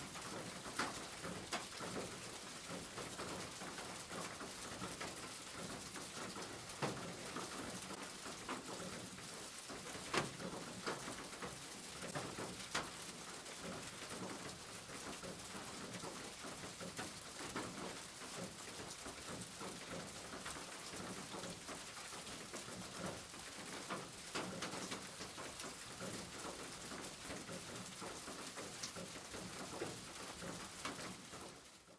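Steady rain falling, a soft even hiss with scattered sharp raindrop taps.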